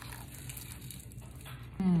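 Faint crunching and chewing of a seaweed-wrapped bite of crab sushi bake, with small crackly ticks. It ends in a short appreciative "mm" near the end.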